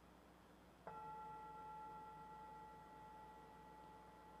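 A singing bowl struck once about a second in, ringing on with several steady tones that fade slowly, sounded to open a period of silent meditation.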